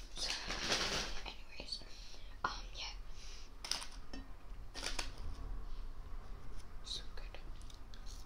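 Close-miked eating sounds of fried chicken: chewing and mouth noises with irregular rustles and sharp clicks, loudest in the first second.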